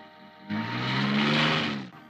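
A car's engine and tyres as the car drives off past the camera. The sound starts suddenly about half a second in, the engine note rising and then easing, and it cuts off abruptly near the end.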